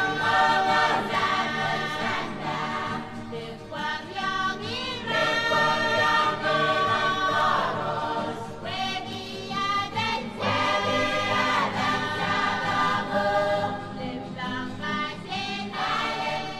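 Music with several voices singing together in held, wavering notes.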